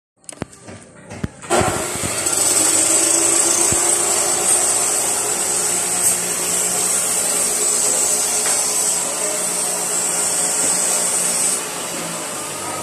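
A power tool's motor starts about a second and a half in, after a few clicks, runs steadily with a high-pitched whine, and cuts off near the end.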